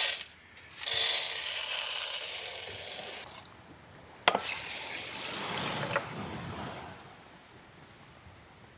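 Dry uncooked rice poured from a plastic bag into an aluminium mess tin, the grains rattling and hissing against the metal and tailing off about three seconds in. A sharp clink about four seconds in, then a second, quieter pour that fades out.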